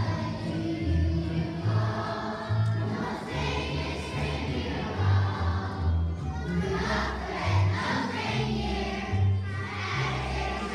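Choir of young children (kindergarten to third grade) singing a song together over an instrumental accompaniment with a moving bass line.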